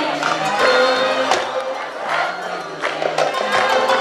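Live band music from an Arabic orchestra with percussion hits, mixed with the voices and cheering of a large concert crowd.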